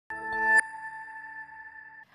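Opening logo sting of a TV news bulletin: a short electronic chord swells and cuts off about half a second in, leaving a high ringing tone that fades away.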